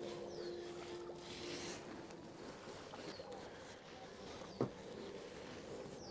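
Quiet outdoor ambience with a few short, falling bird chirps spaced a second or two apart, and one sharp knock a little past halfway through.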